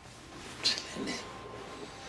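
Bedclothes rustling as a man tosses in bed, with one sudden, louder rustle about half a second in and softer rustling after it.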